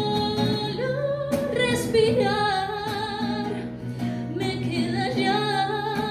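A woman singing long sustained notes with vibrato and some pitch glides, accompanying herself with strummed chords on an acoustic guitar.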